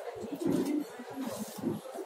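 A pigeon cooing in short, low notes.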